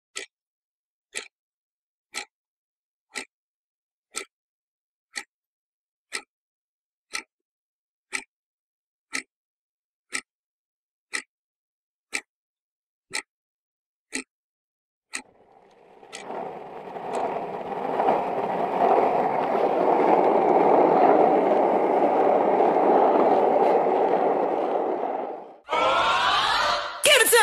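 A clock ticking about once a second, followed by a steady scraping, rolling noise that builds over about ten seconds and stops suddenly.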